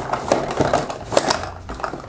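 Hollow plastic toy capsules clicking and knocking against each other and the cardboard as one is shaken out of a cardboard vending-machine-style dispenser box: a quick, irregular run of clicks.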